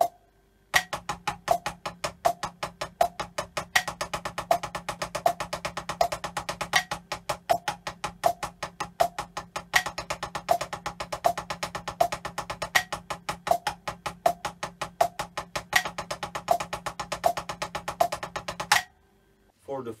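Drumsticks on a rubber practice pad playing double stroke rolls, alternating a bar of sixteenth notes with a bar of sixteenth-note triplets, over a metronome click about every three quarters of a second. An accented stroke opens each bar, every three seconds. The playing starts just under a second in and stops about a second before the end.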